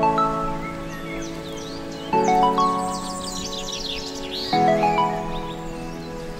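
Background music: a bright electronic dance track with sustained chords that change about every two and a half seconds and quick high chirping notes above them.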